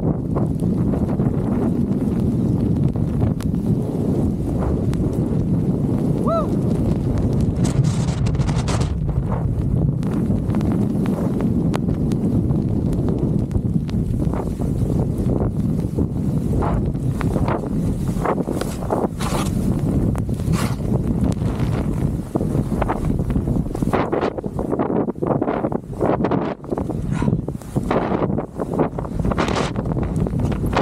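Skis running through deep powder snow, with a steady rumble of strong wind on the camera microphone. In the second half, short sharp swishes and thuds of turns in the snow come quickly one after another.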